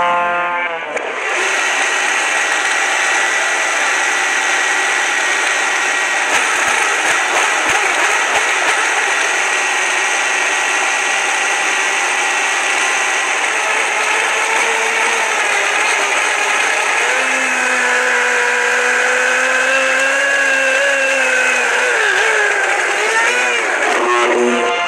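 Blendtec home blender motor running at full speed (speed 10), grinding a jar of food into a thick purée, with the audio played backwards. A loud, steady motor whine; in the second half lower tones waver up and down.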